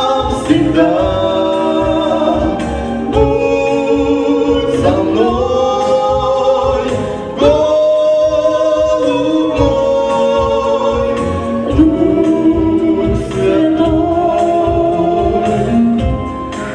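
A man and a woman singing a Christian song together in harmony, holding long notes, over an accompaniment with a steady beat.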